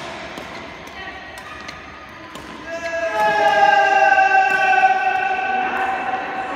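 Scattered sharp smacks of badminton rackets striking shuttlecocks, echoing in a large hall. From about halfway a person's voice holds one long, slightly falling call for about three seconds, louder than the rackets.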